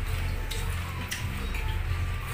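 A few light clicks of a spoon against a plate as rice is scooped and eaten, over background music.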